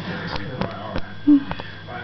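A person breathing and sniffing right at the phone's microphone, with a few light handling clicks and a brief squeak of voice a little over a second in.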